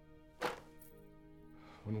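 Sustained, steady film-score tones with a single sharp thud about half a second in; a man's voice starts just before the end.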